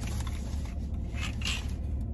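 Light handling noises, small plastic and metal rustles and clicks, from a clip-on gooseneck magnifying glass being turned over in the hands, over a steady low hum in a car cabin.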